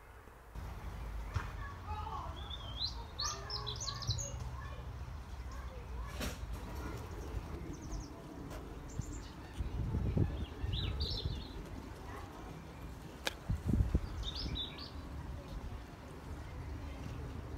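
Small birds chirping in short, scattered bursts over a low rumble on the phone's microphone, with two sharp clicks.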